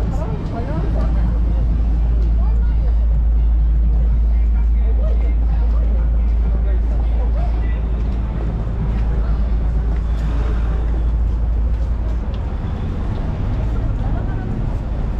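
Busy city street ambience: a steady low rumble of road traffic under the chatter of passing pedestrians.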